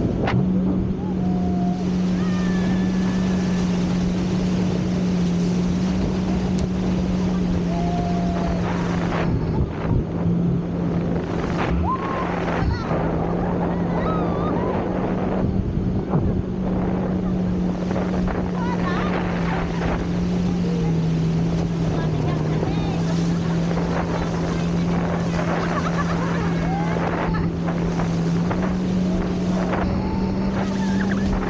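Towing motorboat's engine running in a steady drone, its pitch dipping slightly about two-thirds of the way through and rising again near the end, over the rush of churning water and wind while the inflatable banana boat is pulled at speed. Riders' short calls come through now and then.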